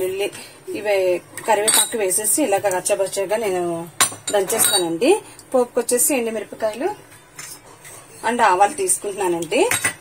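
A thin stainless steel plate clinking and scraping as ingredients on it are handled and moved, with sharp clinks scattered through and wavering ringing tones, quieter for a moment near the end.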